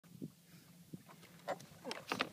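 Faint steady hum of a boat motor while trolling, broken by a few short knocks and creaks as someone gets up from a boat seat and grabs a fishing rod, the loudest near the end.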